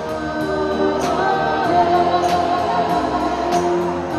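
Live band music with backing singers holding sustained choir-like chords over keyboards. A cymbal is struck about every second and a quarter.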